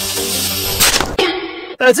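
Angle grinder spinning a paper disc, running steadily with a hum, then a sudden loud crack just under a second in as the paper disc meets the apple and fails, followed by a brief hiss.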